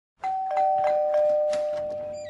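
Two-note doorbell chime: a higher ding, then a lower dong a quarter second later, both ringing on and slowly fading, with a few short clicks over them.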